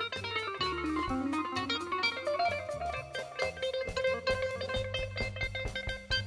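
Live jazz trio playing: a keyboard lead on a keytar runs quickly down and back up, then settles on a repeated note, over drum kit and upright bass.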